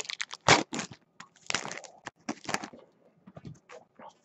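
A trading card pack wrapper being torn open and crinkled, with the cards handled: irregular crackling and rustling bursts that thin out toward the end.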